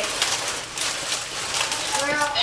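Plastic bag of baby spinach crinkling as it is handled and shaken, an irregular crackle of many small rustles.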